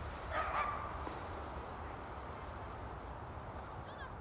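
A dog gives one short whine about half a second in, over a low steady rumble.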